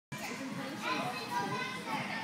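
Several children's voices talking and calling at once, a background babble of kids in a large gym hall.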